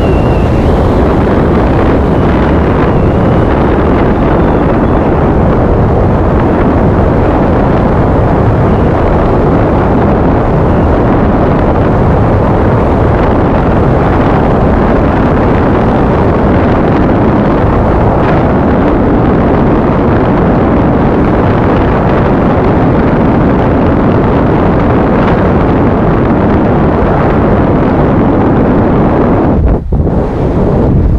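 Wind rushing over a camera microphone during a descent under a tandem parachute canopy: a loud, steady rush of noise that dips briefly near the end.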